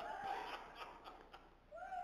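A faint, high-pitched voice, such as a child's or a woman's, calling out briefly twice from the congregation in a large room: once at the start and once, rising in pitch, near the end.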